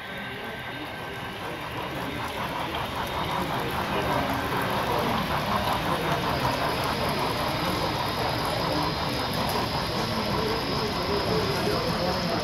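BLI Paragon 3 model steam locomotives running with their sound decoders on: a steady noisy rush that builds over the first few seconds, with a thin high tone joining about halfway through.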